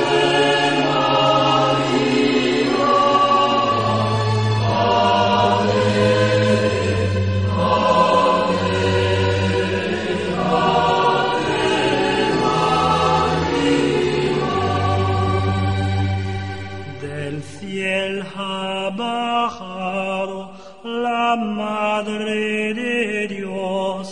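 Choir singing a slow hymn over sustained low notes. About seventeen seconds in, the low notes stop and the singing becomes thinner and more broken up.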